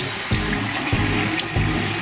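Bathroom tap running steadily into a sink as a makeup sponge is rinsed under the stream, over background music with a steady beat.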